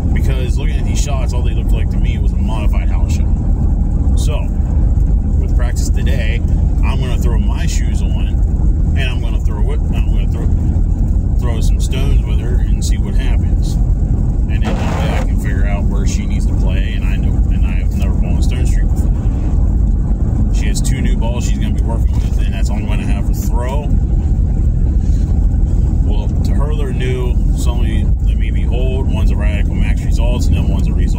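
A man talking inside a moving car's cabin, over a steady low rumble of road and engine noise.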